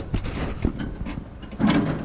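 Pickup bench seat backrest being tipped forward, with clicks and rattles from the seat latch and hinges.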